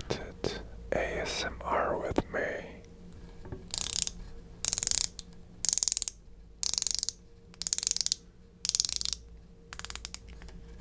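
Wera 8001 A Zyklop Mini 1 bit ratchet's pawl clicking as its knurled thumbwheel is spun by hand, in short bursts of rapid fine clicks about once a second, starting about four seconds in.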